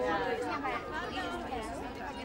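Crowd chatter: several voices talking over one another at once, with no single voice standing out.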